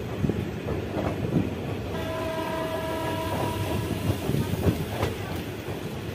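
Passenger train pulling out of a station, heard from an open coach door: steady rail rumble with scattered wheel clacks. A train horn sounds steadily from about two seconds in for roughly two and a half seconds.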